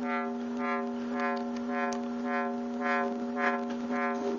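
Synthesizer square-wave tone at a steady pitch through a vactrol-controlled four-pole lowpass filter, its cutoff swept up and down about twice a second so the tone turns bright and dark in an even wah-like rhythm.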